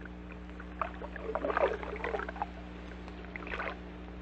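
Quiet gap between tracks of a vinyl LP: a steady low hum with scattered clicks and crackle, and a few soft noisy patches around the middle.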